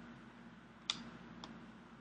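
Two short computer clicks about half a second apart, over a faint steady hum.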